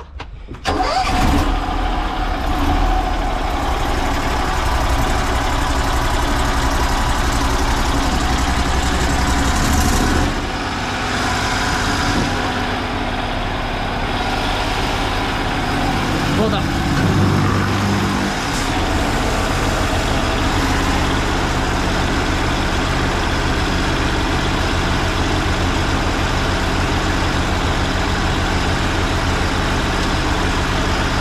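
Small engine of a van-mounted high-pressure sewer-jetting unit started about half a second in, then running steadily. Its note changes about ten seconds in and again around 17 seconds before it settles to an even run.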